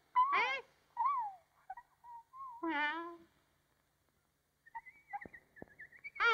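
Wordless cartoon bird vocalizations: three short cooing calls that glide up and down in pitch in the first three seconds. They are followed by a pause and then a faint thin high tone with a couple of light clicks.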